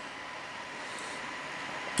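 Steady hiss of room tone and recording noise with a faint, steady high whine. No distinct event.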